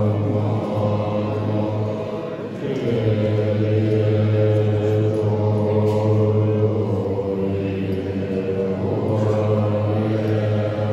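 Group of Tibetan Buddhist monks chanting zung (dharani) mantras in unison: a deep, steady, low-pitched drone of voices, dipping briefly about two and a half seconds in before going on.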